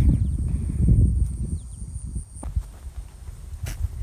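Wind rumbling on the microphone, strongest over the first two seconds and easing after that, with a few faint high chirps and a single click near the end.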